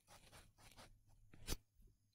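Faint scratching of a stylus on a drawing tablet, with one sharp click about one and a half seconds in.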